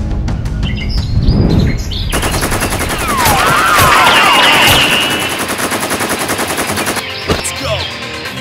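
Rapid automatic gunfire sound effect dubbed over blaster fire: a fast, even rattle starting about two seconds in and lasting about five seconds, with sweeping whistling sounds over it in the middle.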